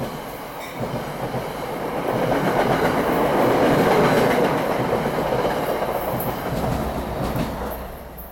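A New Jersey Transit commuter train passing along the platform, its cars and wheels rushing by. The noise builds to its loudest about halfway through and fades as the last car clears.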